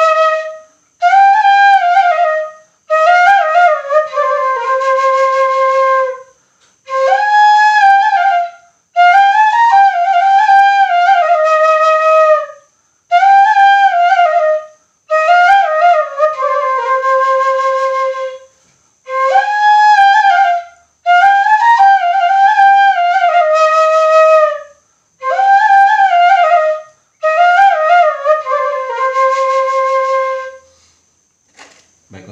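Bamboo suling (side-blown flute) in A# played solo: a dangdut melody in short phrases of one to three seconds, broken by brief breaths, with sliding, ornamented notes.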